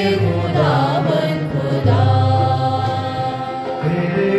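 Harmonium playing sustained notes under a man singing a slow devotional chant, his voice bending through ornamented turns early on and then holding long notes.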